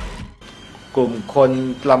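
A man speaking Thai to camera, starting about a second in, after the tail of background music dies out in the first half-second.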